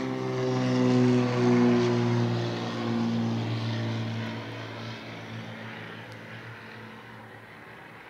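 Propeller airplane flying over: a steady engine drone whose pitch slowly falls, loudest a second or two in, then fading away.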